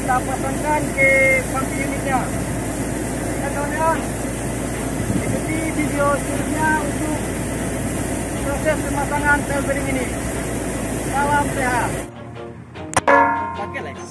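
A steady engine-like drone with voices speaking now and then over it. It cuts off abruptly near the end, and a sharp metallic clink follows.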